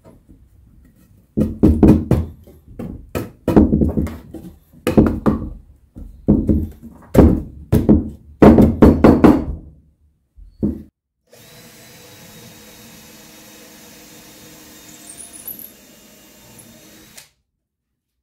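A wooden cross-piece being knocked into place inside a pine timber frame: about a dozen heavy wooden knocks in short runs over some nine seconds. A faint steady hum follows for the last few seconds.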